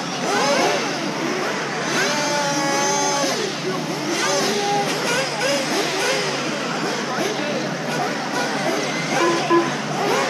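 Electric RC racing buggies' motors whining, with many short rising and falling pitch sweeps as the cars accelerate and brake around the track, one high whine standing out about two to three seconds in.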